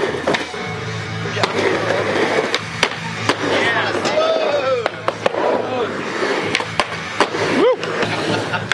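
Skateboards riding a mini ramp: wheels rolling with repeated sharp clacks of the board hitting the ramp and coping, over music with a steady low beat.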